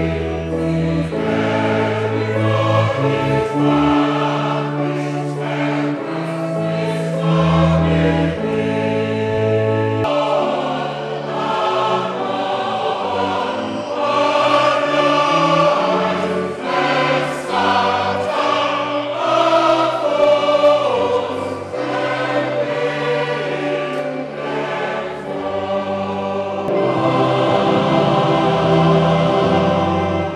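Church choir singing a Christian hymn with keyboard accompaniment. The music changes abruptly about ten seconds in, to a different passage.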